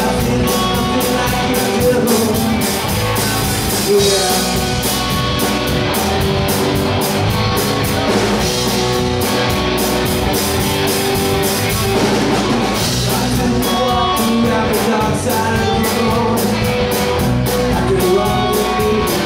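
Live rock band playing loud: electric guitars and a drum kit driving a steady beat, with a sung lead vocal.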